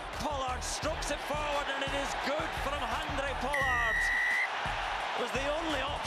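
Stadium crowd noise under a TV commentator's voice. A referee's whistle blows once, held for about a second, about three and a half seconds in.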